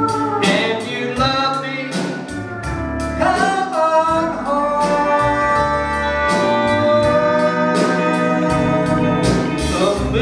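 Live country band playing between sung lines: electric guitar and bass over drums keeping a steady cymbal beat, with long held tones.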